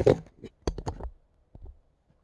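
A few short, light clicks and taps in quick succession about half a second to a second in, then one faint tap; handling noise around a plastic action figure set on a table.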